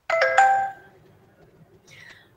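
A short electronic chime of about three quick notes, one starting just after another, loud and lasting about half a second before fading; a fainter brief sound follows near the end.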